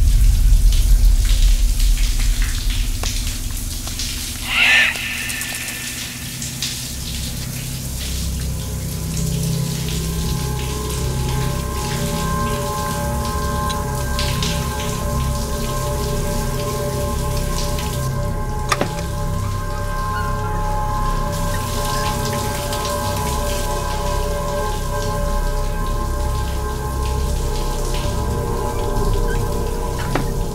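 Shower water spraying and pattering in a steady stream, under a film score of a deep low hit that rings on as a drone. A short swell comes about five seconds in, and held steady tones join about ten seconds in and last to the end.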